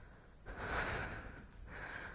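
A woman's heavy breathing: two breathy exhalations, the first about half a second in and the second near the end.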